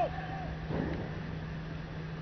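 The tail of a long, drawn-out shouted parade command, ending with a falling pitch at the very start. About a second in comes a brief muffled shuffle or thud, over a steady low hum.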